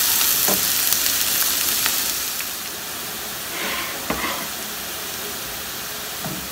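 Chopped onions sizzling in hot oil in a wok while a spoon stirs them, with a few light clicks of the spoon against the pan. The sizzle is louder for about the first two seconds, then settles lower.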